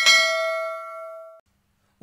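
A single bell ding sound effect, as for clicking a notification bell: one struck ring that fades over about a second and a half and then cuts off abruptly.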